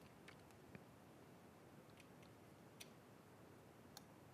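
Near silence: room tone with a few faint computer-mouse clicks.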